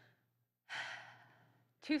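A woman's audible sigh-like breath into the microphone, starting about two-thirds of a second in and fading over about a second, just before her speech starts again near the end.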